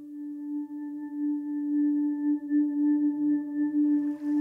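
Meditation music: one sustained low tone with fainter overtones above it, swelling in over the first couple of seconds and wavering slowly as it holds.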